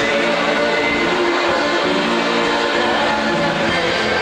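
A live band playing, with held, sustained chords and notes over a strummed acoustic guitar.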